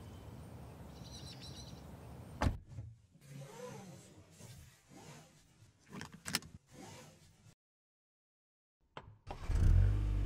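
Sounds of getting into a Mercedes-Benz A-Class: the driver's door shuts with a sharp thud about two and a half seconds in, then quieter cabin handling noises and the click of a seatbelt buckle. Near the end the engine starts and settles into a steady low hum.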